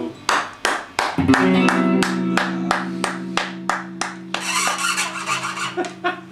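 Sharp rhythmic knocks or claps, about three a second, over a low guitar note held steady from about a second in; near the end a rougher, noisier sound takes over as the knocks die away.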